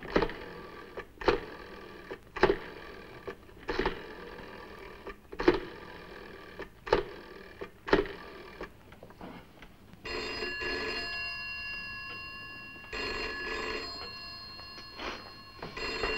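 A telephone being dialled, a short clicking stroke about every second or so for the first nine seconds, then a telephone bell ringing in bursts from about ten seconds in.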